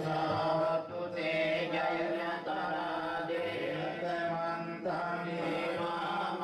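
Buddhist pirith chanting: a slow recitation on long held tones, pausing briefly about a second in and again near five seconds.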